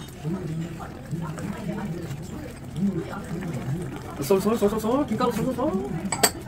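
People talking indistinctly, the voices louder from about four seconds in.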